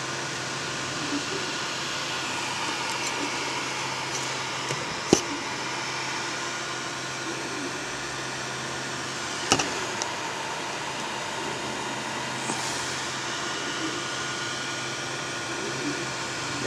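Creality Ender 3 Pro 3D printer running while laying down first-layer skirt lines, with a steady whir from its fans and motion. Two short sharp clicks come about five and nine and a half seconds in.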